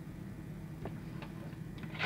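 Motorized display turntable running with a steady low hum, and a few faint ticks.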